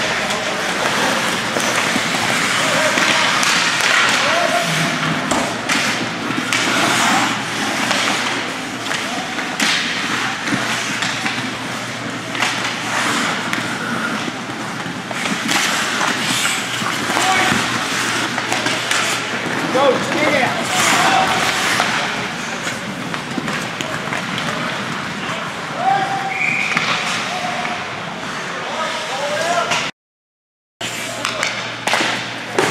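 Ice rink din during a hockey game: skates scraping, sticks and puck clacking, and sharp knocks of the puck and players against the boards, mixed with scattered shouts and voices from players and spectators.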